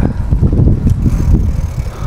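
Wind buffeting the action camera's microphone as it moves along a street: a loud, low, uneven rumble.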